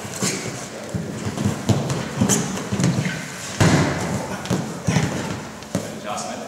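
Two wrestlers scuffling on a wrestling mat: feet shuffling and bodies thudding onto the mat in an irregular run of thumps, the heaviest a little past halfway as the partner is taken down.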